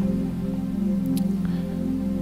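Soft, sustained chords on an electronic keyboard, held steadily with gentle changes of harmony.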